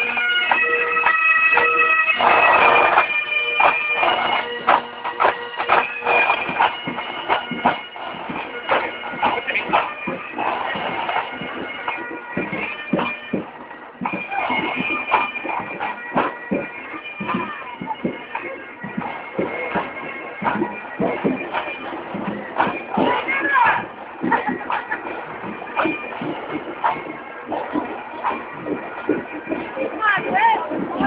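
Pipe band playing bagpipes with drums, loud at first and fading away over the first several seconds as the band moves off, leaving faint piping and the chatter of a crowd.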